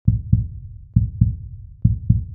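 Intro music made of deep double thumps in a heartbeat rhythm: two beats about a quarter second apart, repeating a little under once a second.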